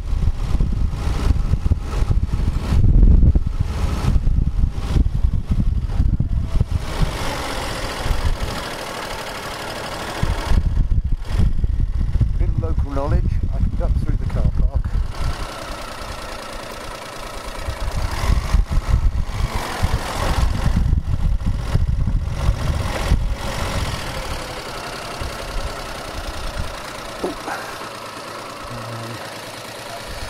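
Motorcycle engine running at low road speed, with wind rumbling on the microphone; the noise swells and eases as the bike speeds up and slows through town streets, louder in the first several seconds and quieter near the end.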